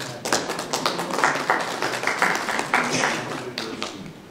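A small audience clapping, starting a moment in and dying away near the end.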